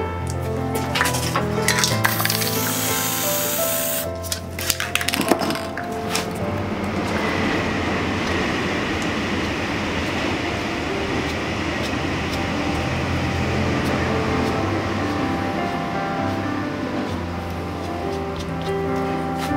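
Aerosol spray-paint can spraying in one hiss of about two seconds, starting about two seconds in. A cluster of sharp clicks follows, all over background music.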